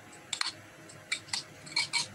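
A handful of short, sharp clicks and taps, about five spread over two seconds, with quiet room tone between them.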